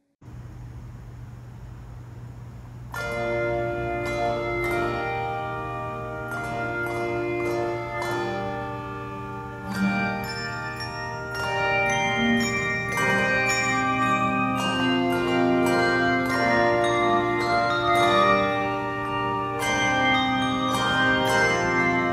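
Handbell choir playing a piece: struck handbells sounding in chords, each note ringing on, beginning about three seconds in over a steady low background hum.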